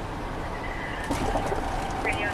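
Road and engine noise inside the cabin of a moving police car. A thin high tone sounds briefly about half a second in, and a steady mid-pitched tone starts just after a second in.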